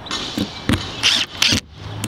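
Cordless drill driving a screw into a plastic camera-mount bracket, running in several short bursts that stop about one and a half seconds in as the screw seats.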